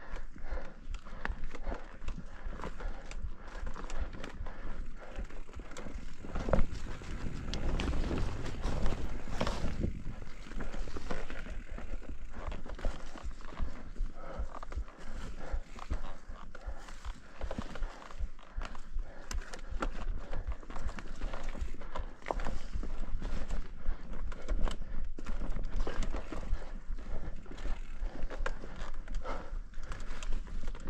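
Mountain bike ridden over a dirt and leaf-strewn forest trail: tyres rolling and crunching over the ground, with frequent knocks and rattles from the bike as it rides over roots and rocks, under a constant low rumble.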